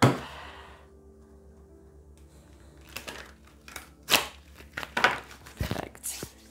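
Tarot card decks handled on a table: a sharp knock at the start, then a few short clicks and taps from about three seconds in, with a low thump near the end.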